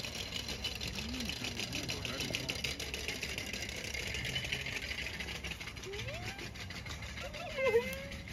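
Night insects chirping in a dense, steady pulsing chorus, with low murmuring voices under it. A cat gives a short rising meow about six seconds in, and a louder meow just before the end that is the loudest sound.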